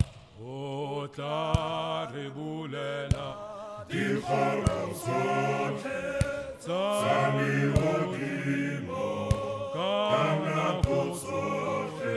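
A group of voices singing without instruments, holding and sliding between notes together. Sharp short hits sound now and then, about once a second.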